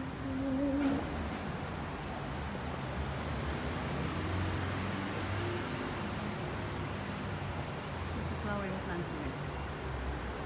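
Steady hiss of rain with a low rumble underneath, a short hummed note at the start and a brief wavering voice near the end.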